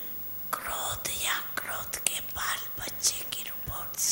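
Whispered speech: a voice talking in short breathy phrases without a clear speaking pitch.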